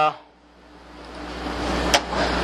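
Steady fan-like room noise with a low rumble, growing steadily louder through the second half, and one sharp click just before the end.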